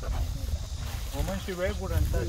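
A person talking, starting about halfway through, over a low rumble of wind on the microphone.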